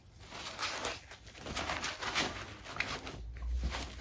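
Irregular rustling and crinkling of a plastic bag and a fabric drawstring project bag as a knitting project is packed away and the drawstrings are pulled shut.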